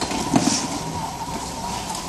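Ampoule labeling machine running, its motor and belt giving a steady low hum with a thin steady whine. A single knock comes about half a second in.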